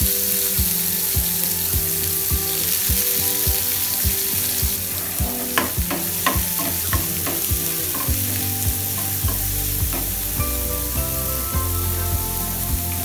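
Chopped onions sizzling steadily in hot oil in a nonstick frying pan. About halfway through, a wooden spatula stirs them, with a run of sharp clicks and scrapes against the pan.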